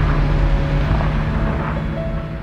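Infiniti sedan's engine running hard with a steady drone as the car drifts in circles on loose dirt, slowly fading toward the end.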